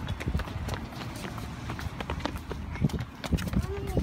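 Quick running footsteps of children on a concrete sidewalk, an irregular patter of steps, with a short vocal sound near the end.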